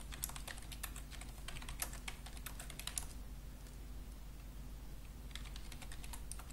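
Typing on a computer keyboard: quick key clicks for a few seconds, a pause of about two seconds, then more keystrokes near the end.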